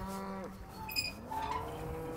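Cattle mooing: two long, low calls, the first right at the start and the second swelling and falling from about a second in. Between them comes a brief ringing clink.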